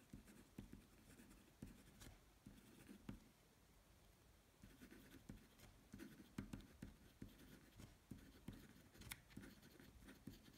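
Faint scratching of a marker pen writing on paper, in short strokes one after another, with a few sharper ticks.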